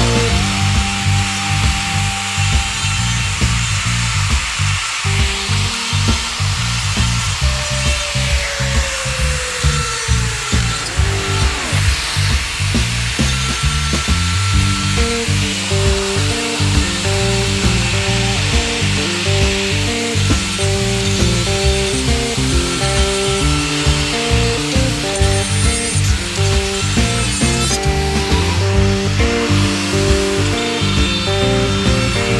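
Music with a steady beat plays throughout, over an electric die grinder running continuously as its burr cuts into wood.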